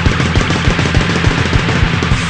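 Punk rock band playing live: distorted electric guitar and bass over a fast, driving drum beat.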